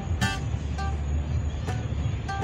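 Acoustic guitar plucked in a few sparse single notes, each ringing briefly, over a steady low rumble of road traffic.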